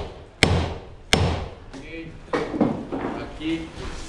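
Two sharp hammer blows on a heavy wooden post, about two-thirds of a second apart, knocking it into place under a beam.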